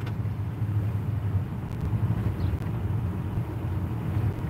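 Car engine idling, a steady low rumble heard from inside the cabin.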